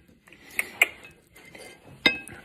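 Small hot sauce bottle being handled over a plate: two short, sharp clicks about a fifth of a second apart, a little over half a second in, with faint handling noise otherwise.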